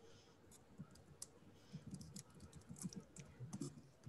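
Faint, irregular clicking of computer keyboard keys being typed on.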